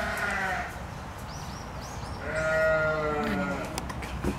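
Two long, bleat-like animal calls, the second louder and slightly falling in pitch, with faint high bird chirps between them.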